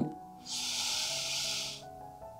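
A woman's long audible breath, lasting about a second and a half, over soft steady background music.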